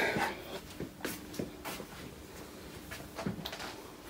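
Faint footsteps on a laminate floor, with a few soft knocks and clicks.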